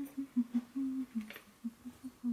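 A woman humming a tune with closed lips: a string of short notes stepping up and down in pitch.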